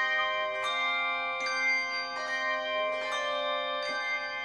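A handbell choir playing a piece, with new notes and chords struck about every three-quarters of a second and ringing on over one another.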